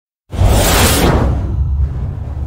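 Logo-intro whoosh sound effect that starts suddenly about a third of a second in and fades over about a second, over a deep rumble that carries on.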